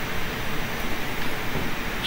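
Steady hiss of room noise in a lecture hall, with no speech.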